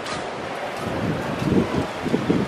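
Wind blowing across the camera microphone: a steady rush with heavier low buffeting in the second half.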